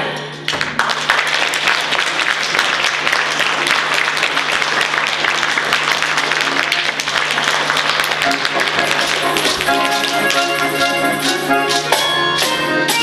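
Audience applauding steadily in a hall after a folk song; near the end, music starts up again over the fading applause.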